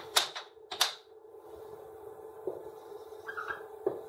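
Two sharp plastic clicks of a dry-erase marker being picked up from the whiteboard tray and uncapped. Near the end comes the short squeak of the marker colouring on the whiteboard, over a steady low room hum.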